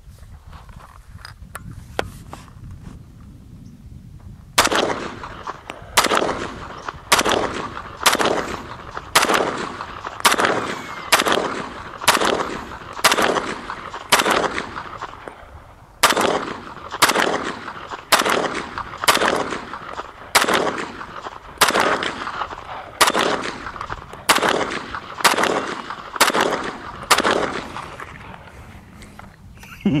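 Winchester M1 carbine firing .30 Carbine rounds in steady semi-automatic fire, about two shots a second, each shot trailing off in an echo. The shooting starts about four seconds in after a few faint handling clicks, pauses briefly midway, and stops a couple of seconds before the end.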